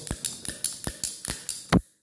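Ratcheting cable cutter clicking as its handle is pumped, about four to five clicks a second, then a loud snap near the end as the blades cut through a thick copper power cable.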